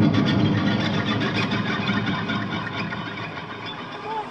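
Distorted electric guitar solo played live through stacked stage amplifiers, the notes dying away so that it grows steadily quieter toward the end.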